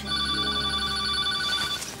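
Telephone bell ringing: one long trilling ring that stops shortly before the end.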